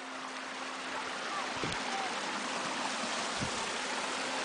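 Creek water running steadily over rocks between shelves of ice, an even rushing sound.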